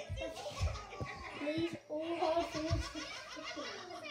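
A child talking and giggling, the words unclear, with a few low thumps.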